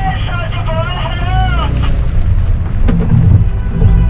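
Heavy wind rumble on the microphone of a camera mounted on a trailered boat, swelling near the end. A high, wavering tone with several overtones bends up and down through the first couple of seconds.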